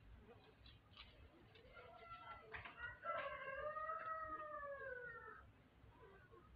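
A faint distant animal call: a few short notes about two seconds in, then one long drawn-out note that rises and falls in pitch, ending about five and a half seconds in.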